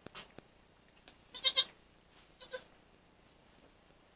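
Goat bleating in a newborn-kidding pen: a short two-pulse bleat about a second and a half in, the loudest sound, and a shorter, softer bleat about a second later.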